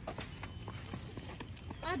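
Footsteps on a brick-paved path: a run of short, sharp, irregular taps, several a second.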